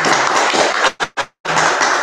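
Audience applauding, a dense spatter of hand claps. The sound cuts out in short gaps about a second in, then the clapping resumes.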